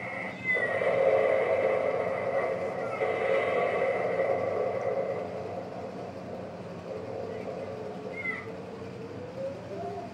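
Cat-like yowling: a long drawn-out cry starts about half a second in and fades after about five seconds, followed by short meow-like calls that rise and fall in pitch near the end.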